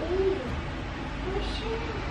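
Soft, short wordless vocal sounds from a small child, twice: one at the start and one about halfway through.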